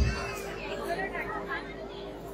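Faint chatter of several voices over a steady hum.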